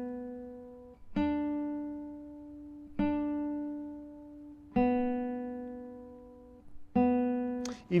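Nylon-string classical guitar playing single notes on the second string, each plucked and left to ring and fade, about two seconds apart: two D notes at the third fret, then the finger lifts for two open B notes.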